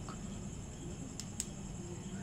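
Quiet room tone with a steady faint hum and a thin high whine, broken by two small clicks a fraction of a second apart a little past the middle.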